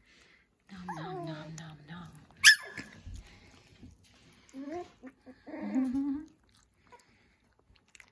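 Cavapoo puppies whimpering, with one sharp, high rising yelp about two and a half seconds in.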